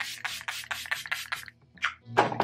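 Youthforia Pregame primer spray, a pump-action mist bottle, spraying onto the face in a rapid run of short hissing sprays, about six a second, that stops about a second and a half in.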